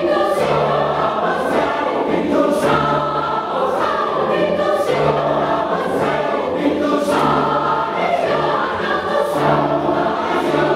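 Mixed choir of women's and men's voices singing in parts, in held chords that change about once a second over a steady low bass line.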